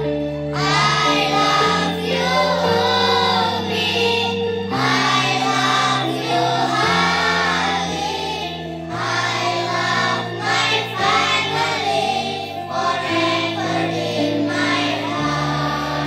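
A group of children singing a song together in unison, over an accompaniment of low sustained notes that change every second or two.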